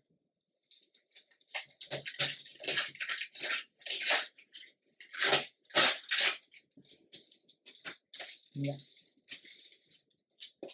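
Crinkled brown paper being torn along the edge of a clear ruler, in a run of short, uneven rips that are loudest in the middle.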